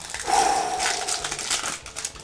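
Foil wrapper of a Yu-Gi-Oh! Invasion of Chaos booster pack crinkling and tearing as it is ripped open by hand, a dense crackle that stops shortly before the end.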